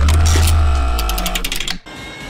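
A short transition sound effect: a deep bass hit that starts suddenly and fades over about a second and a half, with a quick run of mechanical clicks about a second in. It cuts off abruptly near the end.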